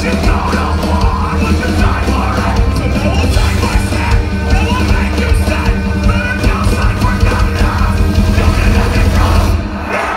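A metalcore band playing live at full volume: distorted guitars and heavy drums with a strong bass end, and the vocalist yelling over them. The music drops out briefly just before the end.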